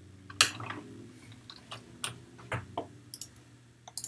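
Computer mouse clicks: a series of short, sharp clicks at irregular spacing, the loudest about half a second in, over a faint low hum.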